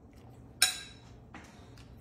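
A metal fork clinks once against a white ceramic bowl, ringing briefly, with a fainter tap a little later.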